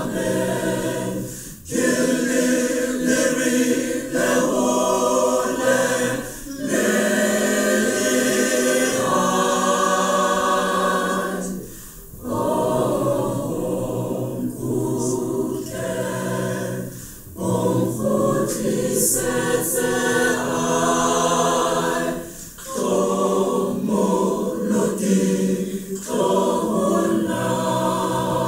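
A congregation singing a hymn in Sesotho, unaccompanied, with brief pauses for breath between lines about every five seconds.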